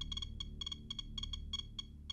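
SOEKS Defender Geiger-counter dosimeter clicking at irregular intervals, several short high-pitched ticks a second. Each tick is a count of radiation from decay products of a thorium sample that gets through its glass ampoule.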